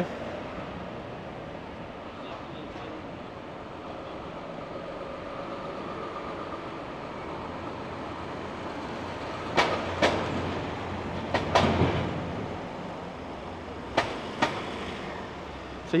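A van driving slowly past at close range, its engine running and tyres rumbling over the paving, with a few sharp knocks in the middle and two more near the end.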